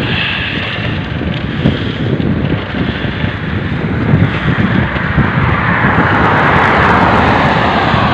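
A pickup truck approaching from behind on the highway and passing close by, its engine and tyre noise swelling steadily to its loudest near the end, over wind rumbling on the microphone.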